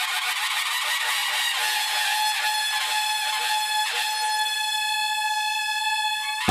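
Conch shell (shankh) blown in one long, steady note, with repeated sharp strikes sounding alongside it.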